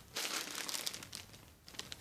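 Clear plastic polybag around a garment crinkling as it is grabbed and lifted, loudest in the first second, then fainter scattered crackles.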